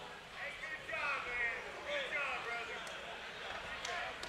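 Faint, indistinct voices of people in the crowd talking, beneath the room's steady background noise.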